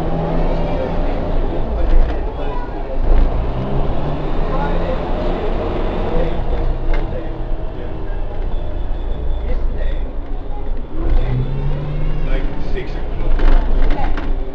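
Diesel engine of a double-decker bus heard from inside on the upper deck, running under way with its low hum rising and easing as the bus pulls along and slows, plus road and cabin noise.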